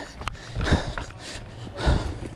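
A cyclist breathing hard, out of breath after a fast ride, with two heavy breaths close to the microphone. A few light clicks and rustles come between the breaths.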